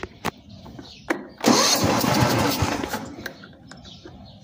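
Lawn tractor's 12 hp Tecumseh engine being cranked by its starter with the ignition key: a couple of clicks, then about a second and a half of loud cranking that dies away without the engine settling into a run.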